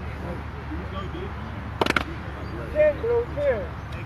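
A quick cluster of hand claps about two seconds in, from a group of players clapping together as they break a huddle, followed by a few short shouts from the players.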